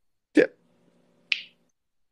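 A woman's short 'yeah', then a brief breathy hiss about a second later, with a faint steady hum from the call audio between them.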